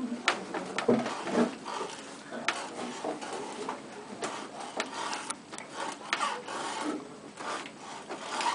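Hand carving tool scraping and cutting into the wood of a wooden clog, in a series of short, irregular scraping strokes.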